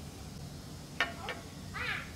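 Short, high-pitched animal calls: one sharp call about a second in, a fainter one just after, and a wavering call near the end, over a steady low hum.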